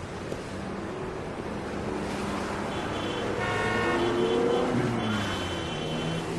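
Street traffic: vehicles running past on the road, growing louder towards the middle as one goes by, with a vehicle horn sounding briefly in the middle.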